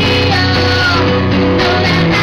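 A woman singing live, holding a long note that slides down, over her own strummed acoustic guitar, amplified through a small PA in a bar.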